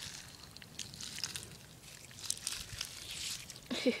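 Bare feet moving through shallow water over mud and pebbles: faint sloshing with small scattered clicks, busier about two seconds in.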